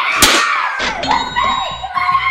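Excited high-pitched voices of several kids exclaiming and squealing, with a sharp knock about a quarter second in.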